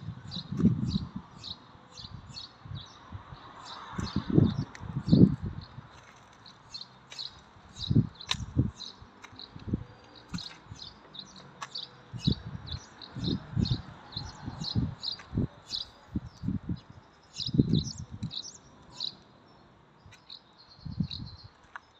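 A small bird chirping in short, high, quickly repeated chirps, about two a second, with irregular low thumps on the phone's microphone.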